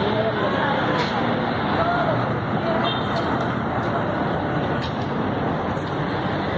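Steady street noise, a continuous rush of traffic, with indistinct voices of people talking nearby.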